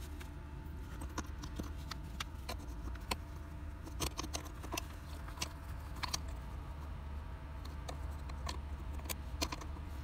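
Scattered small clicks and rattles of a plastic wiring connector and its harness being tugged and worked on a blower motor resistor, the connector refusing to come off; the mechanic suspects burnt terminals. A steady low hum runs underneath.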